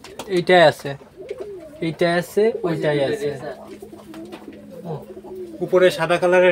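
Domestic pigeons cooing in the loft, repeated low warbling calls.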